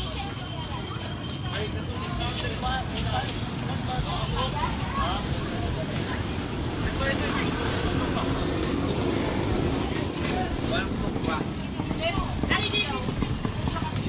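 Busy street ambience: several people talking in the background over a steady low rumble of road traffic.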